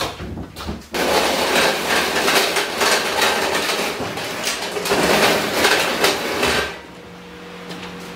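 Rapid, dense clattering and knocking of hard objects being handled and moved, which stops suddenly near the end and leaves a quieter steady hum.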